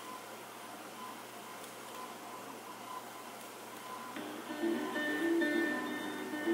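Vinyl record playing on a suitcase turntable: a low surface hiss with faint, regular ticks, then about four seconds in, strummed acoustic guitar music starts.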